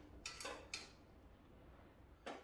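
Near silence, with three faint short clicks in the first second as a hand handles the bandsaw's blade guide.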